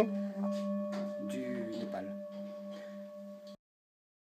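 Nepalese bronze singing bowl filled with water, played with a wooden stick: a steady, pulsing low hum with a higher overtone above it, slowly fading, while the water in it faintly crackles. The sound cuts off abruptly near the end.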